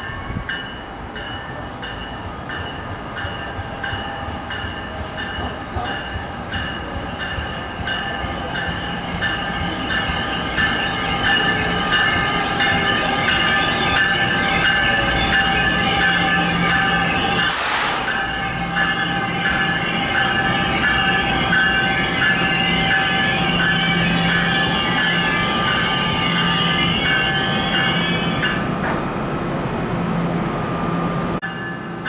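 NJ Transit ALP-46A electric locomotive and multilevel coaches pulling into the station, the wheels and brakes squealing in several high tones over the rumble of the train, getting louder as the train comes alongside. There is a short hiss about 25 seconds in as the train slows to its stop.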